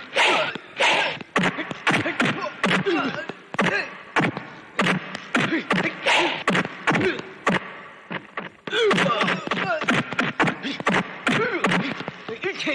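Foley punch and kick impacts, about two to three sharp whacks a second, mixed with men's grunts and shouts. There is a brief lull just before the blows pick up again near the end.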